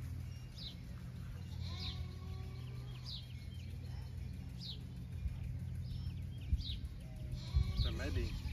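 A farm animal bleating faintly, over short high chirps that slide downward about every second and a half and a steady low hum.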